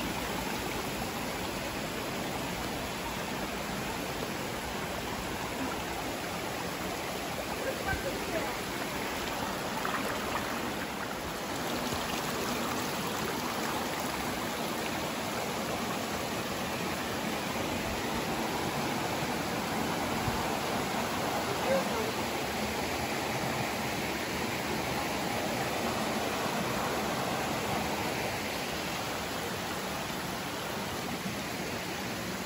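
Steady rushing of a forest stream, a little louder from about twelve seconds in.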